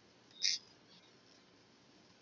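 A single short snip of safety scissors cutting paper, about half a second in.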